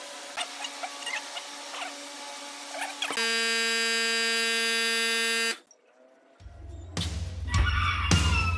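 Short chirps over a faint steady hum, then a loud, steady buzzer-like tone that lasts about two and a half seconds and cuts off suddenly. After a brief silence, music with a heavy bass starts near the end.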